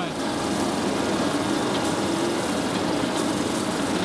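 Stone Slinger truck running steadily as its conveyor belt throws gravel: an even engine hum under a continuous noisy wash.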